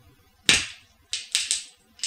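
Wooden skewer being poked through a foam board wheel: a sharp crack about a quarter of the way in as the point breaks through, then three quick scratchy crackles as the skewer is pushed on through the board.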